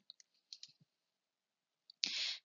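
Near silence with a few faint, short clicks, most in the first second and one just before the end.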